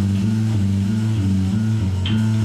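Live blues band playing: electric guitar and bass carry a riff of low notes that step up and down in pitch.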